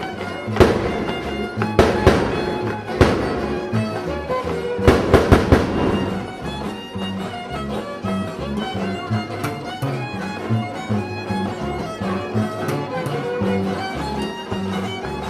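A small string band of violin, guitar and guitarrón playing, the bass notes stepping up and down under the fiddle melody. Several sharp bangs cut across the music in the first six seconds, with a quick run of four about five seconds in.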